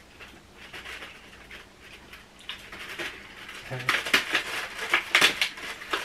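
Cardboard advent calendar doors being torn open and the chocolates handled: faint rustling at first, then a busy run of small crinkles and clicks in the second half.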